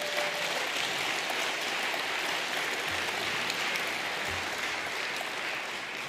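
Audience of delegates applauding in a large hall, a steady, even clapping that eases off slightly near the end.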